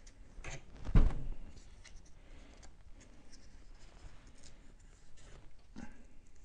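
Hands wrapping sandpaper around a crankshaft journal clamped to a workbench: soft rustling and small clicks, with one louder knock about a second in.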